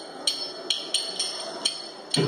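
Small metal hand cymbals struck in a steady beat, four strikes about half a second apart, each ringing briefly.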